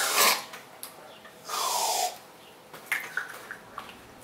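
Aerosol whipped cream can spraying in two short hissing bursts, with a few small clicks near the end.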